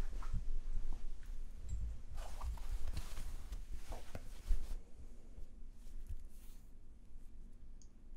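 T-shirt fabric rustling and shuffling body movement close to the microphone, with irregular low thumps and the busiest rustling about two to five seconds in.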